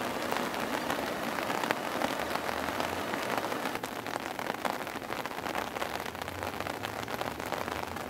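Steady hiss of rain falling on the flooded ground and vegetation, with many fine patters.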